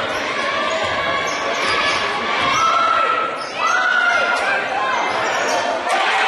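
Basketball game on a hardwood court: the ball bouncing and sneakers squeaking in short squeals, with voices shouting and echoing in the gym.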